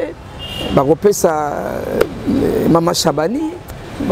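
A man speaking in short phrases with pauses: conversational speech only.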